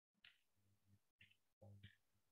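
Near silence: faint call-audio room tone that switches on and off, with a few very soft, brief sounds, the last near the end.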